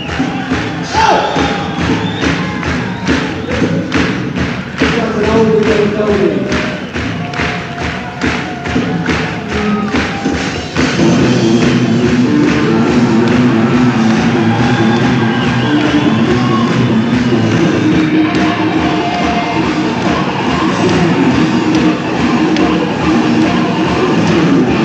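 Live rock band playing: drum hits on a steady beat under sliding electric-guitar notes. About eleven seconds in, the full band comes in louder with sustained, dense guitar.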